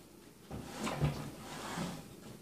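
Hands handling and turning a painted wooden walking stick wrapped with wool close to the microphone: rustling and rubbing, with a light bump about a second in.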